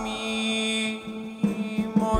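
Live ballad with piano, guitar, bass and drums accompaniment, the end of a held sung note fading out about a second in while the band plays on.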